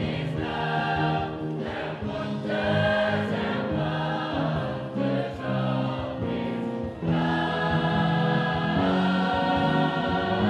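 Mixed-voice gospel choir singing in harmony, in sustained chords with short breaks between phrases.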